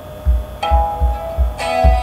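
Guitar notes plucked at the start of a song, a first note about half a second in and a fuller one near the end, with low thumps about every half second underneath.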